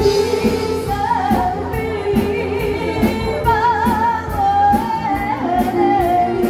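A woman singing a slow pop ballad into a handheld microphone over amplified instrumental accompaniment with a steady drum beat. Her voice comes in about a second in and holds long notes with a wide vibrato.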